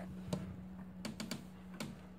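Handling noise: a handful of light clicks and taps, about five, scattered over a faint steady low hum.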